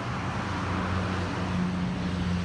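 Street ambience: road traffic noise over a steady low mechanical hum.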